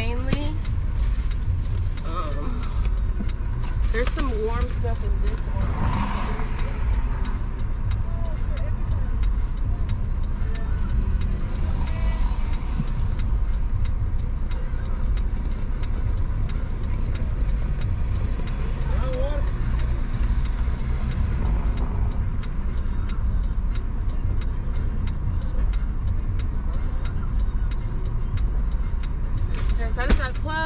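Steady low rumble of a car idling while parked, heard from inside the cabin, with faint voices now and then.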